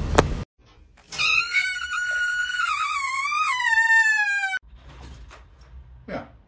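A cat gives one long, drawn-out yowl of about three and a half seconds that wavers and then drops in pitch near the end before it is cut off suddenly.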